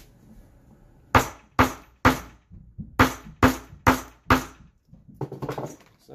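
Hammer striking, seven sharp blows about half a second apart in a run of three and then a run of four, each with a short metallic ring. A brief clatter of lighter knocks follows near the end.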